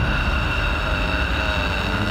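Steady low rumble with a thin high whine held over it, without a clear beat.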